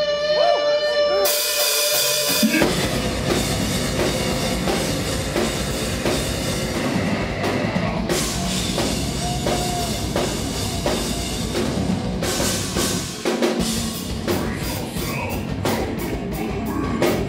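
A live heavy metal band playing a song. It opens on held guitar notes, a cymbal crash follows about a second in, and the full band comes in at under three seconds with drum kit, bass and guitars. The band breaks briefly near the end and comes back with rapid, evenly spaced drum and cymbal hits.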